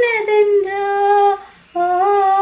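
A woman singing a Tamil song unaccompanied, holding a long note that breaks off for a moment about three-quarters of the way through before she comes in on the next held note.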